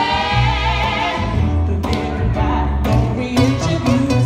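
Live band of voice, bass and guitar: a woman sings a long, wavering held note over steady bass notes. After about a second and a half, short rhythmic chord strokes come in under shorter sung phrases.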